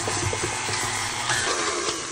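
KitchenAid Artisan tilt-head stand mixer running, its paddle beater creaming butter, oil and sugar in the steel bowl: a steady motor whir with an even hum.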